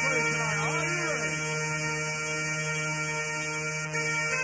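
Rave music in a beatless breakdown: a held synth chord rings on, with swooping, bending tones over it in the first second or so.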